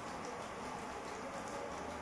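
Faint, steady hiss of background noise, even across low and high pitches, with no distinct events.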